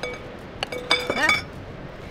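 A metal wire whisk clinking against a glass bowl: one sharp strike at the start, then a quick cluster of strikes about a second in, each leaving the glass ringing briefly.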